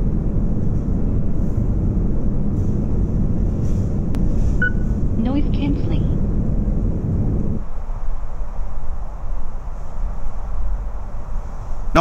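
Outdoor background noise with a steady low rumble. About eight seconds in, the rumble is cut away sharply as the Sony WH-1000XM3's active noise cancelling switches on, leaving a fainter hiss.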